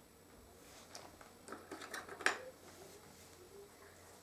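Faint handling sounds from a cutout alphabet letter being picked out of a wooden compartment box and laid on a felt mat: a few small clicks, with one sharper click a little past halfway.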